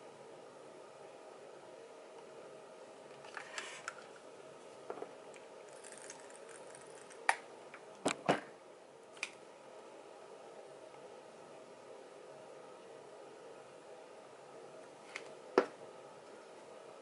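Plastic paint bottles and cups being handled and set down on a tabletop: scattered light knocks and clicks, a quick cluster about halfway through and another sharp one near the end, over a faint steady hum.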